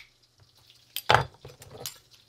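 Steel spoons clinking as they are handled, with a sharp click about a second in, then a few faint clicks.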